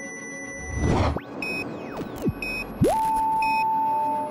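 Electronic sound effects: a whoosh about a second in, long falling and rising pitch sweeps, short beeps about once a second, and a loud steady tone that starts with an upward sweep about three seconds in.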